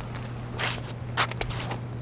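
A few footsteps on wet, gritty ground, the clearest two about half a second apart, over a steady low hum.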